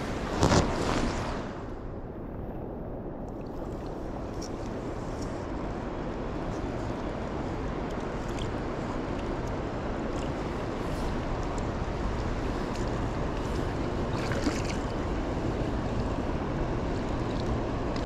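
Steady rushing of flowing river water mixed with wind on the microphone, with a brief louder burst of noise about half a second in.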